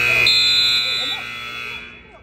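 Scoreboard buzzer sounding one long, steady blast of about two seconds as the clock runs out on a wrestling bout, fading near the end, with voices under it.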